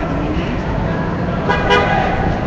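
City street traffic noise, with a short car horn toot about one and a half seconds in.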